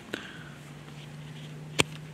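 Knife blade slashing at a thick nylon strap in a cut test, with one sharp click near the end over a faint steady low hum.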